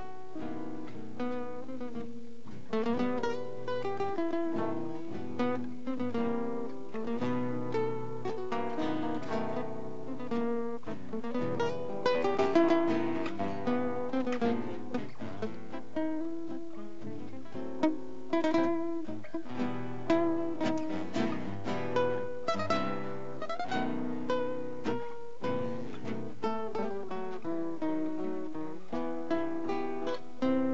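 Four acoustic guitars playing a tango together, a plucked melody over strummed, rhythmic chords, with no singing: the instrumental opening of a tango medley.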